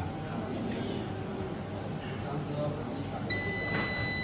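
A SAKO Sunpolo 8 kW solar inverter's buzzer sounds a loud, steady high-pitched beep that starts suddenly about three seconds in, as the inverter powers up after being switched on.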